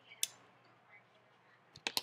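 A single sharp click about a quarter second in, then a few quick sharp clicks near the end, with quiet room tone between.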